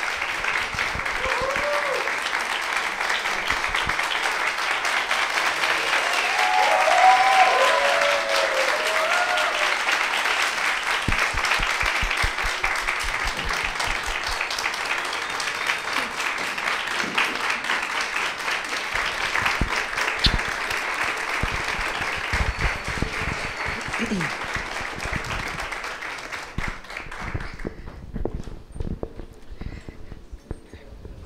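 An audience applauding steadily for a long time, with a few whoops over the applause in the first ten seconds. The applause dies away near the end.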